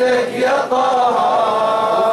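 Male chanting of a jalwa, a celebratory Bahraini devotional chant, led by a radood. About halfway in, the melody settles into a long, slightly wavering held note.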